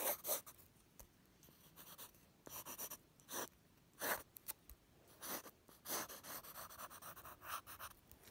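Pencil sketching on paper: a string of quick scratchy strokes as lines are drawn and gone over, with short pauses between.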